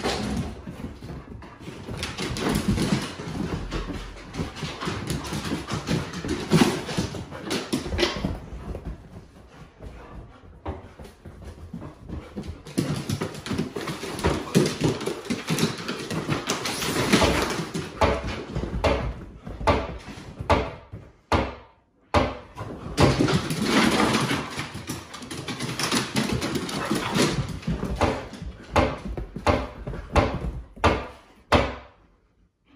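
Several huskies playing rough: dog play noises mixed with paws and claws clattering and skidding on bare wooden floorboards, in uneven bursts with a couple of brief lulls.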